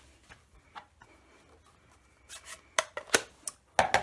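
Faint rubbing of paper towel drying a clear photopolymer stamp. About halfway through come some scraping, then four sharp plastic clicks and knocks in under a second and a half as a plastic ink pad case is handled on the table.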